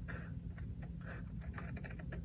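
Scissors snipping through a cardstock strip along a card's edge, heard as a run of faint small ticks.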